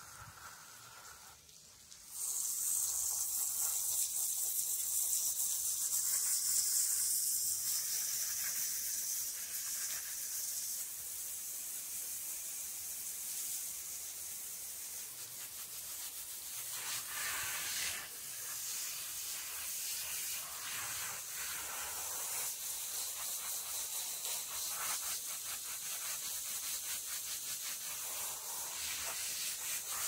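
Water hissing from a garden hose spray nozzle onto a dog's wet coat and the concrete beneath, starting suddenly about two seconds in and then running steadily, rising and falling a little as the spray moves.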